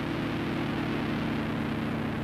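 Steady low drone of several held tones under a hiss of analog four-track tape, opening a lo-fi song.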